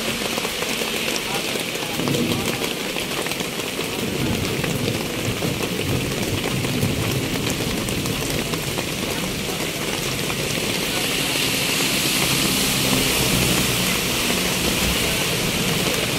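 Steady rain falling on roofs and wet ground, with people's voices in the background.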